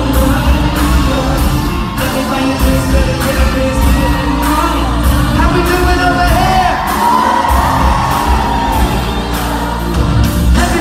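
Live pop music played through an arena sound system, heard from among the audience: a steady drum beat about twice a second with a voice singing gliding lines over it.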